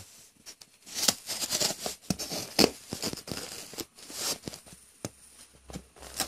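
A large knife blade slitting the packing tape and shipping label on a cardboard box: irregular scraping and tearing strokes, the strongest about a second in, near the middle and after four seconds.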